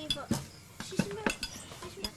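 Plates and metal cutlery clinking together as dishes are cleared from a table and stacked: a string of sharp, separate clinks.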